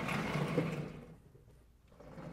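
Chalkboard being worked at: a rough scraping noise lasting about a second that then fades away.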